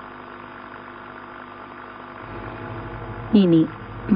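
The last notes of a Carnatic ensemble die away into a steady electrical hum from an old broadcast recording. A brief burst of an announcer's voice comes near the end.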